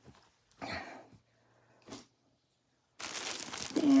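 A couple of faint, brief rustles, then about three seconds in a plastic shipping bag crinkling loudly as it is handled.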